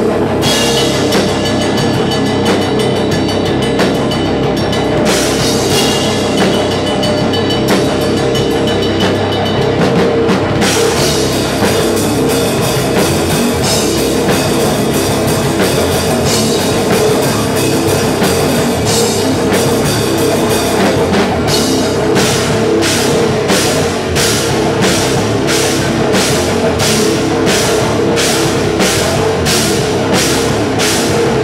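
Heavy metal band playing an instrumental live: electric guitar and bass guitar over a full drum kit. About two-thirds of the way in, the drums turn to evenly spaced accented hits, about two a second.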